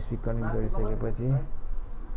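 A man talking for about a second and a half, over a steady low electrical hum.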